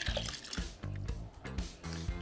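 Distilled white vinegar poured from a glass measuring cup into a bowl of water, a short splashing trickle, over background music.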